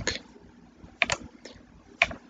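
A few sharp clicks of a computer mouse, a close pair about a second in and another near the end, as the pointer clicks a dialog's close button.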